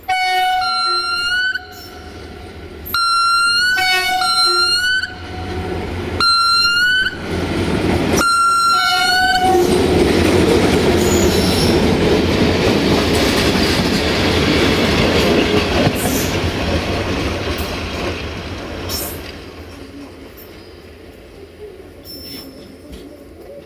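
Four blasts from the horn of the approaching GM diesel shunting locomotive 64-1264-2, each a second or so long and ending with a slight rise in pitch. Then the locomotive and its coaches roll close by with a loud, continuous wheel-on-rail rumble that fades near the end.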